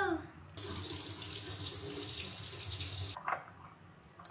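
Kitchen tap running into a stainless steel sink as a medicine dropper is rinsed: the water comes on about half a second in and is shut off a little after three seconds, followed by a short knock.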